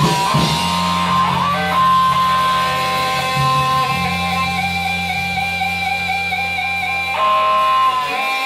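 Live blues-rock trio's electric guitar and bass guitar holding long sustained notes, with a wavering high note through the middle. The held sound stops near the end.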